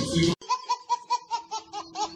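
A baby laughing: a quick run of high giggles, about five a second, coming in just after a man's voice cuts off abruptly.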